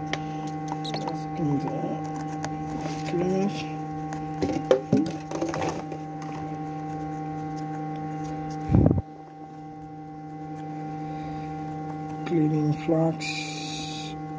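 Steady electrical hum with several fixed tones from workbench equipment, with faint voices under it. A single low knock comes about nine seconds in, after which the deeper rumble drops away, and a short hiss follows near the end.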